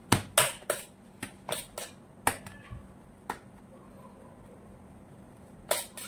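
Sharp tapping clicks from a metal palette knife working whipped cream onto a sponge cake, about seven in quick irregular succession in the first three and a half seconds and one more near the end.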